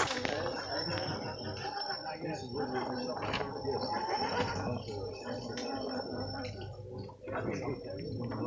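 Indistinct background talk from several people, steady in level, with no clear mechanical sound standing out.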